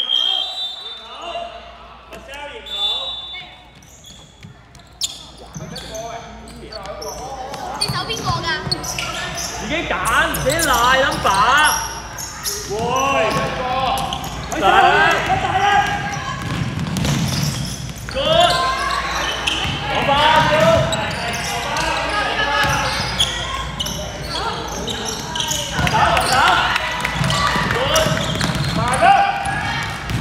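Indistinct voices calling and shouting in an echoing gymnasium, with a basketball bouncing on the court. It is quieter for the first few seconds, then the shouting builds and carries on in waves.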